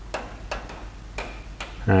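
Light, sharp metallic taps at an irregular pace, about four in two seconds, as a bolt is worked and tapped into a steel 4-link suspension bracket on the rear axle.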